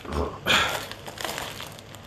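A soft thump, then a clear plastic zip-top bag crinkling and rustling as a hand presses and handles it, squeezing air out around the compressed hemp inside.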